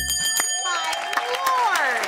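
A bright bell-like chime rings right at the start, then an audience cheers and applauds, with voices calling out over the clapping.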